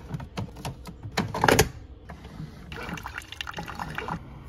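Pod coffee brewer: the lid is clacked shut over a K-cup pod with a few knocks, loudest about a second and a half in. From about two and a half seconds in, a thin stream of brewed coffee pours into a mug.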